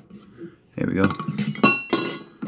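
A stainless steel tumbler knocked while being handled, with a clink and a short metallic ring near the end.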